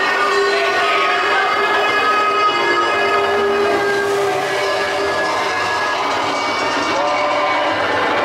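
Roller coaster train climbing the chain lift hill: steady clattering of the lift and wheels on the track, with a steady mechanical whine under it.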